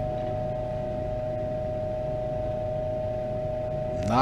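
A steady humming tone over a low rumble, holding unchanged.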